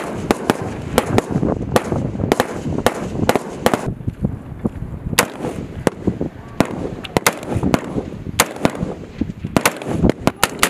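Rifle fire from several M4 carbines: sharp single shots at irregular spacing, two or three a second, sometimes close together.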